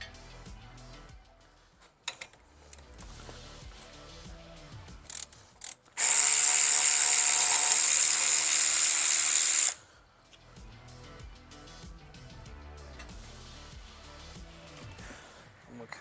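Power ratchet with a 7 mm Allen bit running steadily for about four seconds, about six seconds in, undoing a brake caliper slider bolt. It stops abruptly.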